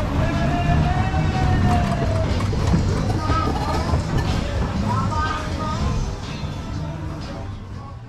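Ride music with a singing voice over the low rumble of a Berg- und Talbahn rolling out to a stop, fading away near the end.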